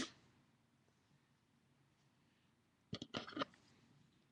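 Mostly near silence, then about three seconds in a short clatter of a few clicks as a pair of scissors is picked up.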